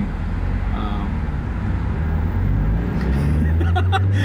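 Car engine and road noise heard from inside the cabin while driving, a steady low hum whose pitch rises and grows louder about three seconds in as the car picks up speed.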